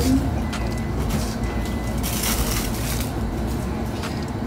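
Fabric rustling in a few soft swishes as a dark clothing item is handled and held up, over a steady low background hum.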